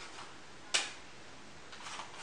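A single short slap about three-quarters of a second in: a juggling ball landing in the palm as it is caught after a small throw. Otherwise only faint room background.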